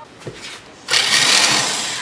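Impact wrench running against a quad bike's wheel nut to loosen it, starting suddenly about a second in as a loud, rapid hammering rattle.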